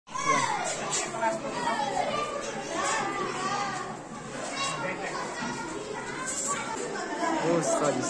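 Many schoolchildren's voices chattering and calling out at once, high voices overlapping and rising and falling in pitch.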